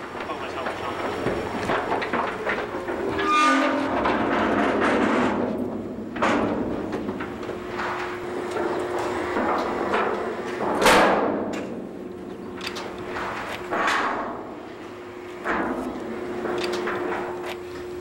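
Steel cattle chute panels and gates clanging and rattling as cattle are worked through, with repeated sharp metal knocks and a steady hum underneath.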